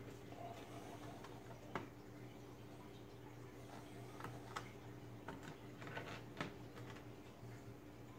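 A handful of faint, sharp clicks from a Lenovo G50 laptop's plastic bottom access panel as it is slid and unclipped from the base, spread over several seconds, over a low steady hum.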